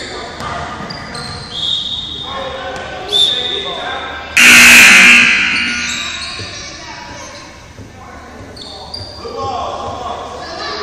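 Basketball being dribbled on a hardwood gym floor, with players' voices and the echo of a large gym. About four seconds in comes a sudden, very loud signal blast lasting under a second that rings on in the hall, after which play stops.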